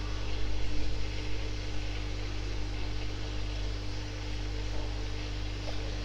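A steady, unchanging electrical hum with a low drone, a single steady tone above it and a faint even hiss.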